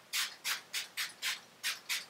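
Fine-mist pump spray bottle of face mist spritzing in a quick run of short hisses, about seven sprays a few per second.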